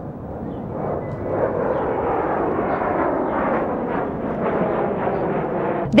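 Steady engine noise of an airplane in flight, growing a little louder about a second in.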